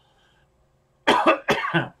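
A man coughing into his fist: a short run of loud coughs starting about a second in.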